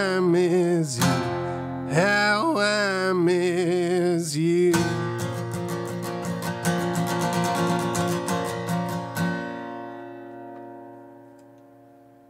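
A man singing with a strummed acoustic guitar. The voice stops about five seconds in, and the guitar strums on alone before a final chord rings out and fades away, ending the song.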